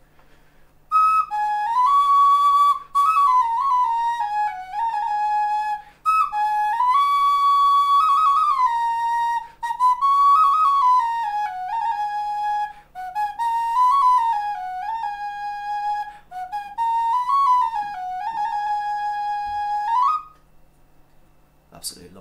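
Bone flute made from a red deer's leg bone with a beeswax fipple, played freely at random: a melody of whistle-like notes stepping up and down in several short phrases with brief breaks between them, the last phrase ending on a rising note.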